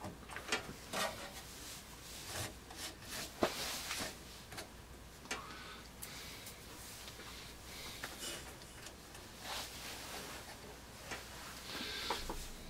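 Faint, scattered small clicks, taps and rubbing of hands and a cotton swab working inside an open desktop computer case.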